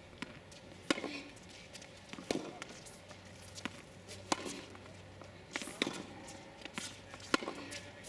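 Tennis rally on a hard court: sharp pops of the ball off racket strings and off the court surface, about one a second, with shoe steps between them.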